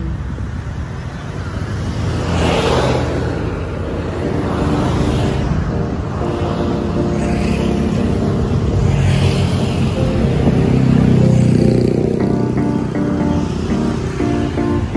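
Road traffic: cars and motorcycles passing close by, with the rush of their going-by swelling a couple of times. Background music with sustained notes is laid over it and becomes clearer near the end.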